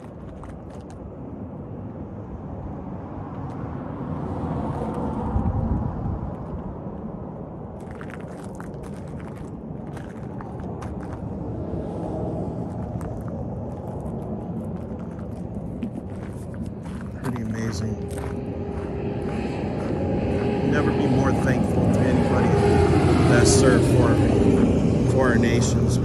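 Outdoor background noise with a motor vehicle's engine. From about two-thirds of the way through, the engine hum grows steadily louder, as if the vehicle is coming closer.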